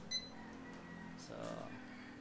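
Handheld barcode scanner giving one short, high beep just after the start as it reads a product barcode.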